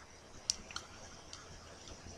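A few faint, short clicks, the first and loudest about half a second in, then three more spread over the next second, over low background noise.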